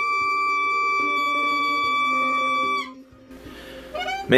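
Clarinet holding one long, steady high note that stops about three seconds in, with lower steady tones sounding beneath it that fade soon after.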